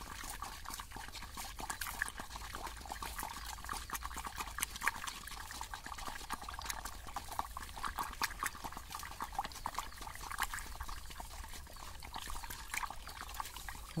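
Wooden stick stirring a thin flour-and-water mix in a metal basin: continuous sloshing and swishing of the liquid, full of quick, irregular little splashes and clicks.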